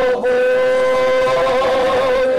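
Song with a singer holding one long steady note, wavering slightly near the end.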